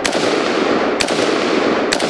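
Chinese Polytech AKS-762 rifle firing 7.62×39 rounds: three shots about a second apart, each trailing a long echo.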